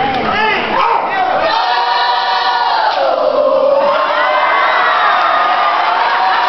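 A youth gospel choir holds a long sung note that slides down in pitch about three seconds in. Whoops and shouts rise over it in the second half.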